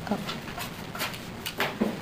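A woman's short "oh", then a few light clicks and taps of markers and sticky notes being handled on a table, with brief vocal sounds in between.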